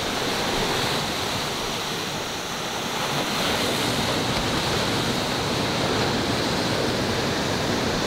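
Ocean surf washing against a rocky shore: a steady rush of water with no distinct breaks or impacts.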